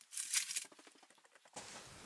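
Bubble-wrap and paper packing rustling and crinkling as a shipping box is unpacked: a short run of fine crackles in the first half-second or so.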